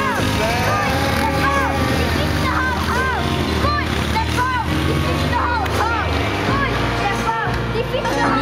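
Background music: a song with held bass notes and a singing voice in short rising-and-falling phrases.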